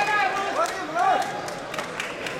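Indistinct speech in a busy hall, louder in the first half and quieter after.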